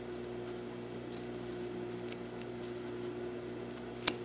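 Sewing scissors making a few faint small snips as the blade tips clip into the corner of a welt-pocket opening, over a steady low hum.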